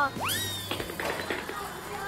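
A comedic rising whistle glide, like a slide whistle, followed by a quick run of light taps: a variety-show sound effect for a child scurrying off.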